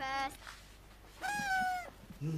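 A dog whining: a short whine at the start, then a longer, higher whine a little over a second in.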